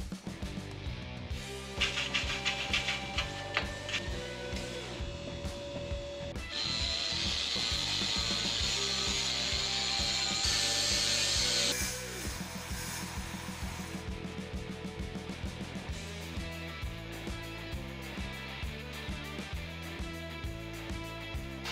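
Background music with a steady beat, mixed with workshop sounds: a run of sharp rattling clicks about two seconds in, then a loud steady hiss of a power tool working aluminium sheet for about five seconds in the middle.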